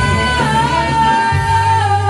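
Live band music: a woman singing one long held note over a Zemaitis electric guitar and a steady bass line.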